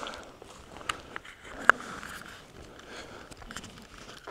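Footsteps on dry forest-floor litter: scattered small crackles and clicks, one sharper click a little before the middle.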